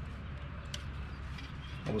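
Quiet outdoor background: a steady low hum with a few faint clicks, then a man's voice starts near the end.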